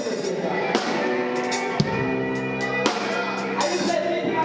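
Live worship band music: long held chords with a steady drum kit beat and sharp drum hits.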